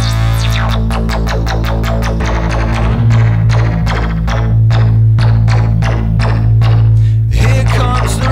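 Modular synthesizer playing a loud, distorted bass drone that holds steady, under a fast, even run of sequenced percussive hits.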